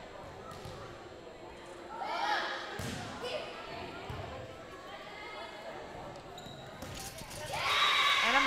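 Indoor volleyball rally: a volleyball is struck, and players and spectators call out, with the sound ringing in the gym. Near the end the crowd gets loud, cheering as the point is won.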